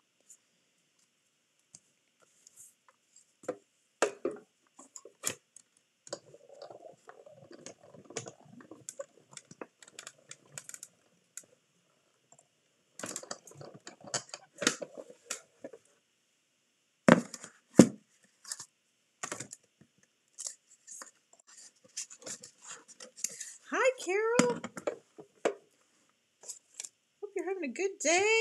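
Acrylic cutting plates, die and paper clicking and rustling as they are handled and cranked through a manual Stampin' Cut & Emboss die-cutting machine, with two loud sharp clicks a little past the middle. A short stretch of voice follows near the end.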